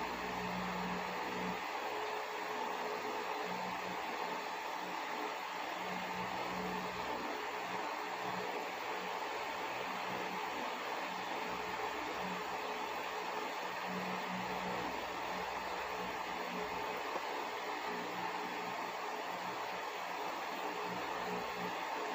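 Electric fan running with a steady hum.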